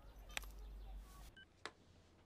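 Quiet film soundtrack: a soft click, then a very short high electronic beep and another click from a mobile phone as a call is ended.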